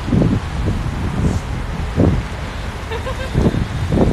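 Wind buffeting a phone's microphone during a bike ride: a low, noisy rumble that swells in three gusts.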